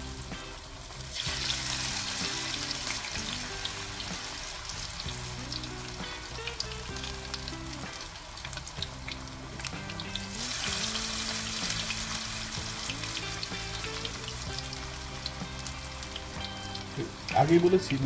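Battered pumpkin flowers sizzling as they deep-fry in hot oil in a wok on a medium flame. The sizzling swells about a second in and again about ten seconds in, the second time as another battered flower goes into the oil.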